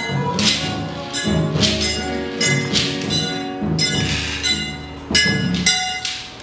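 Live Afro-Brazilian percussion music in its closing bars: hand drums and acoustic guitar under repeated ringing metallic bell strikes.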